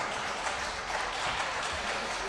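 Applause from members of parliament in the debating chamber, holding steady.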